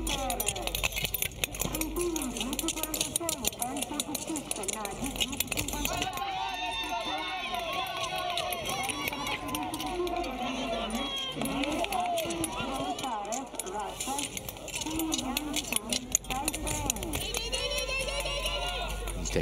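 People's voices talking throughout, with a rapid run of sharp high ticks and scrapes in the first few seconds.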